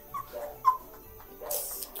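A woman's stifled laughter behind her hand: two short high squeaks, then a breathy burst of laughing near the end.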